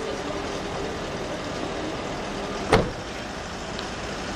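An SUV door slammed shut once, a single loud thud about two thirds of the way through, over a steady hum of vehicles.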